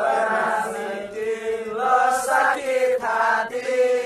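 A group of men singing together in a chant-like chorus, holding long notes in unison, with short breaks between phrases.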